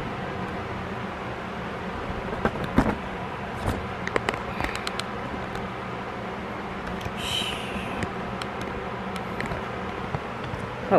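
Clicks and knocks of a phone being handled and adjusted at close range, over a steady background hum, with a short rustle about seven seconds in.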